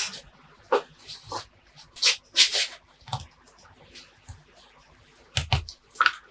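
Hands working on a potted bonsai: short rustles of foliage and soil with light clicks, a longer rustle about two seconds in, and a soft knock against the pot or bench near the end.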